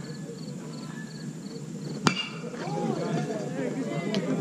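A bat hitting a pitched baseball: one sharp crack about two seconds in, followed by spectators' voices shouting.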